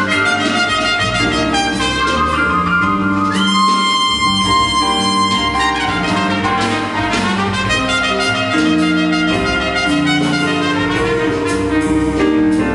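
Live jazz trumpet solo, played open, over double bass and drums. Quick runs of notes with one long held note, bent up into, from about three and a half to five seconds in.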